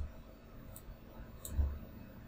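Two computer mouse clicks less than a second apart, the second followed by a low thump.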